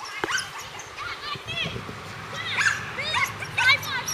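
A dog yipping and barking in short, high-pitched calls, coming in several quick clusters through the few seconds.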